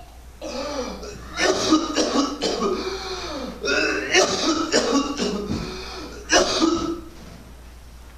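A man coughing and clearing his throat in three rough bouts, with strained vocal sounds between them, dying down about seven seconds in.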